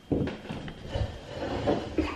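Low rumbling, shuffling and a few soft knocks as a person sits down on a chair at a table and settles in, loudest about a second in.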